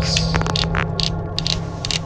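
Scattered sharp clicks and scraping handling noises over a steady low hum.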